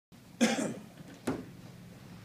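A person coughing or clearing their throat once, loudly, about half a second in, followed just over a second later by a shorter, sharper sound.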